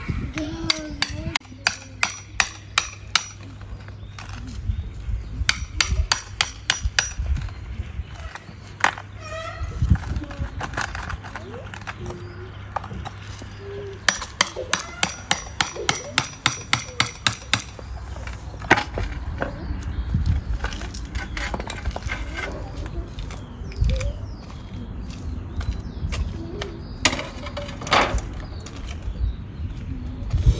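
A hammer taps a steel screwdriver used as a chisel, chipping along the joints of old stone paving slabs. The taps are sharp and metallic, about three a second, in several separate runs.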